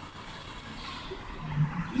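Faint street background: a passing car's tyre hiss, steady through the gap in speech, with a man's voice starting right at the end.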